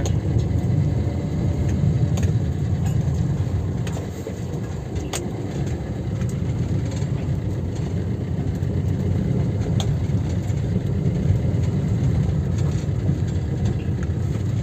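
Inside a car's cabin while it drives slowly: a steady low engine and road rumble, with a couple of faint clicks.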